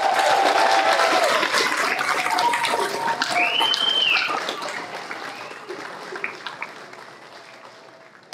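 Audience applauding, with a few cheering voices calling out. The clapping dies away over the last few seconds.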